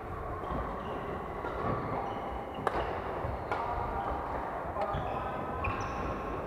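Badminton rackets hitting shuttlecocks in sharp cracks, four of them, the loudest about two and a half seconds in. Between the hits, shoes squeak briefly on the wooden court floor.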